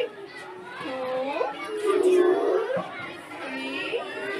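Speech: voices reciting aloud in a classroom, children's voices among them, with some syllables drawn out as in counting together.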